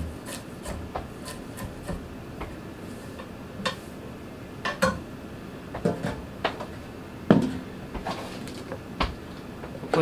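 Hand-forged Japanese gyuto (Ginsan steel) working carrots on an end-grain larchwood cutting board: scattered, irregular knocks of the blade on the wood, with scraping as the cut pieces are moved. The sharpest knock comes about seven seconds in.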